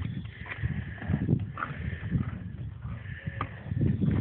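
Horse chewing a carrot right at the microphone: irregular low crunches and breaths.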